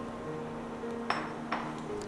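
Two light glass clinks about half a second apart, the first with a brief ring, as an emptied glass bowl is set down beside a pan. Quiet background music plays underneath.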